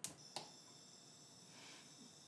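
Two sharp clicks of a gas hob's igniter and control knob, about a third of a second apart, as a burner is lit, followed by a faint brief hiss of gas about a second and a half in.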